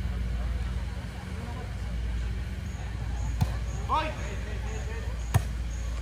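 A volleyball being hit by hand twice, two sharp smacks about two seconds apart, with a short shout between them. A steady low rumble runs underneath.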